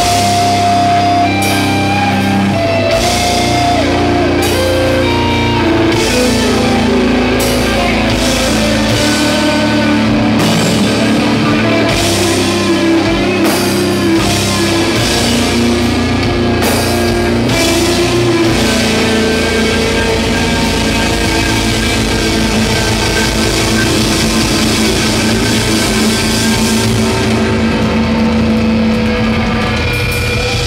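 Live heavy metal band playing loudly: distorted electric guitars and bass holding long, slow notes over a drum kit.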